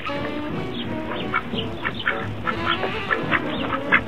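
Domestic ducks quacking in a run of short calls, over background music.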